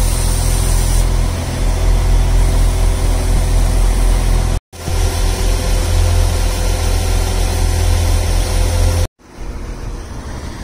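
NI Railways Class 4000 diesel multiple unit idling at a platform: a steady, loud low engine rumble with a faint even hum above it. The sound cuts off abruptly twice, about halfway through and near the end, and is quieter after the second break.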